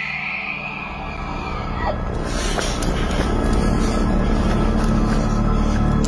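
A high, drawn-out screech of unknown origin that fades out within the first second and a half. Behind it, background music grows louder and settles into a low, steady drone.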